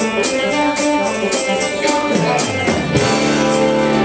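Small live band playing the opening of a worship song on electric guitar and drum kit, with a steady quick high beat about four times a second. About two and a half seconds in, a low note slides down into a held chord.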